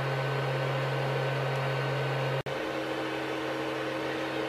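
Creality CR-10 Mini 3D printer's cooling fans humming steadily, with a constant low tone and a hiss, while the heated bed warms up. About two and a half seconds in the sound drops out for an instant, then the hum carries on with a second, higher steady tone added.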